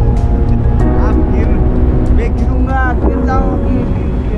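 Heavy, steady wind rumble on an action camera's microphone during a tandem paraglider flight. Background music plays under it in the first half, and voices come in about three seconds in.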